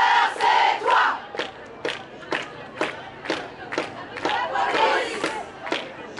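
A hand drum beating a steady pulse of about two strokes a second, with a crowd of women chanting in unison over it. The voices are loudest in the first second and again around five seconds in.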